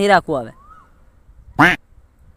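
Duck quacking: two short nasal quacks close together at the start and a sharper third one about one and a half seconds in, with a faint rising-and-falling whistle between them.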